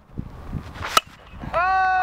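A single sharp smack of a pitched baseball striking, about a second in, followed near the end by a long, drawn-out shout.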